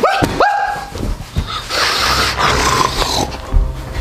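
A man yelping in fright, followed by a man growling and barking like a rabid dog, with background music underneath.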